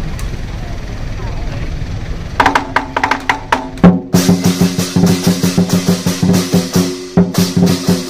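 Lion dance percussion: scattered strikes a couple of seconds in, then, about halfway through, the drum and cymbals break into a quick, steady beat with a ringing tone under it. Before that, a low background rumble.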